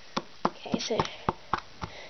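A metal utensil knocking against a plastic bowl while mashing cupcake, a series of sharp clicks about three a second.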